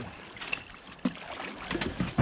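A landing net with a catfish is lifted out of river water: water splashing and a few sharp knocks, about half a second apart, against the boat's side.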